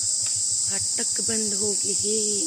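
Loud, steady high-pitched shrilling of insects (jhingur) that never lets up, with a person's voice briefly calling out in the second half.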